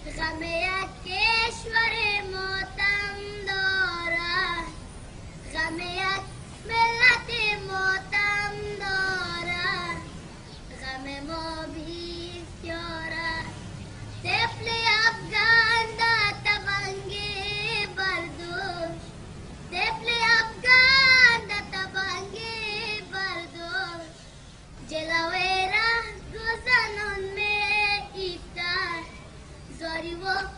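A boy singing solo, in melodic phrases a few seconds long with a wavering pitch and short breaks for breath between them.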